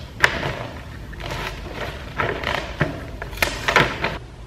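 Gift wrapping: wrapping paper crinkling and rustling over a cardboard box, with sticky tape pulled from its roll and pressed down, as a run of sharp, uneven crackles, loudest near the end. The room is echoey, and the noise is far from quiet.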